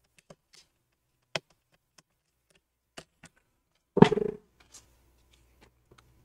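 Scattered small clicks and taps of a screwdriver tip working at a stuck screw in a plastic laptop bottom panel, with one louder short clatter about four seconds in.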